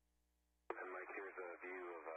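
Near silence, then less than a second in a crew member's voice starts abruptly over the narrow-band space-to-ground radio link, with a click at the onset.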